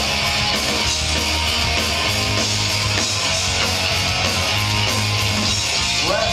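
Punk rock band playing live: distorted electric guitars strumming over bass and drums in an instrumental passage with no singing, loud and steady throughout.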